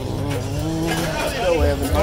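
Indistinct voices of people talking nearby, over a low steady hum that grows a little louder near the end.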